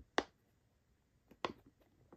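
Silicone bubbles of a cube-shaped pop-it fidget toy pressed in by fingertips: one sharp pop just after the start, then two softer pops a little past the middle. These are the five-bubble side's bubbles, which don't pop well.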